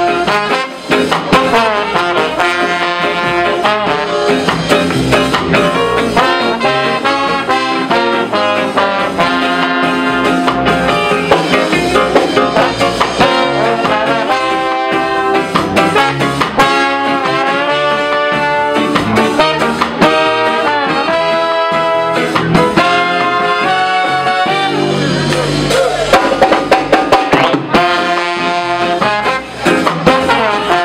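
Live ska band playing an instrumental tune, led by a horn section of trombone and saxophones over drums.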